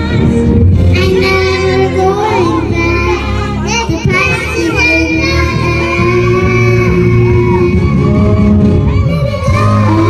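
Young girls singing a song together into microphones, amplified over backing music.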